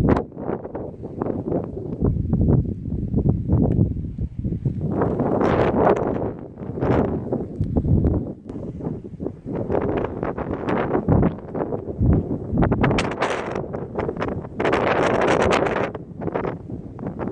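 Wind buffeting the microphone in irregular gusts, with no steady tone underneath.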